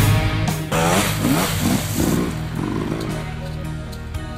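Dirt bike engine revving in several quick rising bursts over rock music, which fades lower toward the end.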